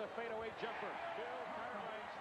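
Quiet TV broadcast audio of a basketball game: an announcer talking over a steady background of arena noise.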